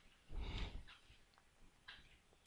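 A faint breath close to the microphone, about half a second long, a moment in; the rest is near silence.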